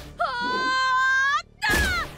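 A cartoon character's long, high-pitched straining cry of effort as she heaves a croquet mallet, held and rising slightly, breaking off about a second and a half in. A shorter cry falling in pitch follows near the end.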